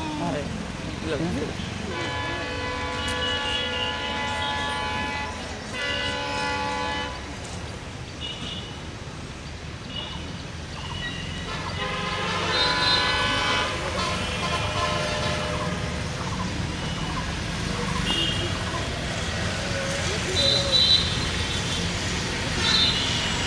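Diesel locomotive's multi-tone horn sounding three times as the train approaches: a blast of about two seconds, a shorter one, then another of about two seconds near the middle. A steady low rumble runs underneath and grows slightly louder toward the end.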